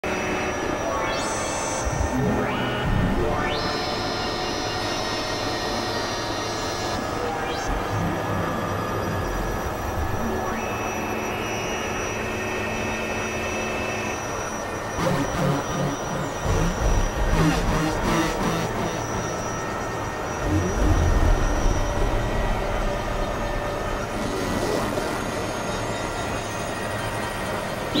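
Experimental industrial noise music made on synthesizers: a dense, noisy drone with high held tones that come and go, and heavier low rumbling pulses in the second half.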